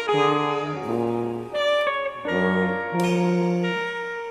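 Modern jazz: a tenor saxophone and a tuba playing long held notes together, moving to a new pitch about every second.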